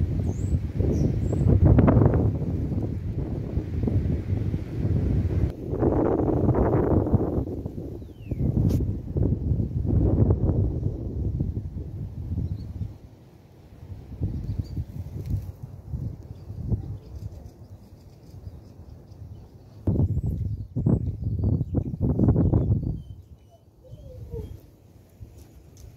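Wind buffeting the microphone in uneven low gusts, easing for a few seconds in the middle and rising again near the end, with a few faint high bird chirps in the first second.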